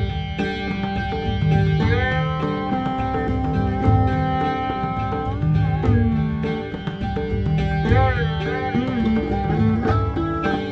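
Rudra veena playing a Raag Durga dhrupad composition, its plucked notes sustained and bent in long pitch slides (meend), with pakhawaj strokes beneath in Teevra taal.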